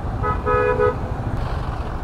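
A vehicle horn honks once, briefly, two notes sounding together, over the steady low rumble of a motorcycle being ridden through traffic.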